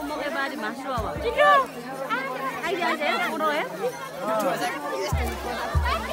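Crowd of many voices chattering and calling over one another. Near the end a low thump sets in, repeating about twice a second.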